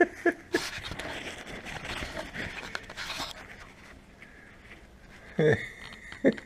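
Cloth camouflage boonie hat handled and rubbed close to the microphone: a few seconds of rustling that dies away about three seconds in.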